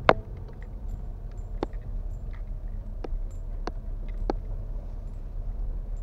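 A car's engine and road noise as a steady low rumble heard from inside the cabin, with one loud sharp click right at the start and four lighter clicks or knocks over the next few seconds.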